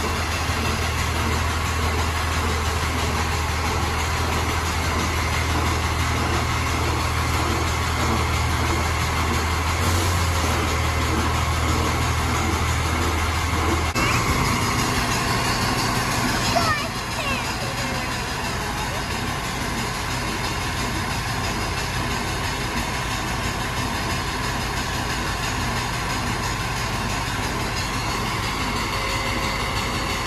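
Heavy work trucks' diesel engines running at idle, a steady low hum over a broad hiss, with water spraying from a broken water main. The low hum drops away about 14 seconds in, leaving a broader steady noise with a single knock a couple of seconds later.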